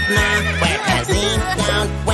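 Upbeat children's song music with a cartoon horse whinny sound effect over it.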